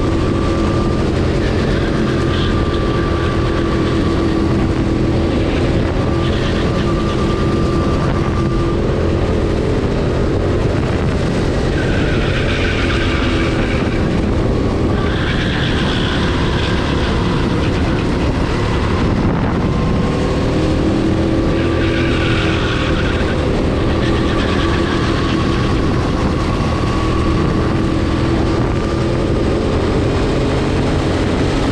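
Go-kart engine heard from the driver's seat, its pitch climbing on the straights and dropping into the corners as the kart laps the track. Spells of a higher-pitched noise come through the corners about twelve to seventeen seconds in and again around twenty-two seconds.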